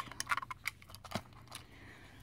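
Hands handling hard plastic items and plastic bagging: a sharp click at the start, then a scatter of small clicks and light rustling over the next second, trailing off.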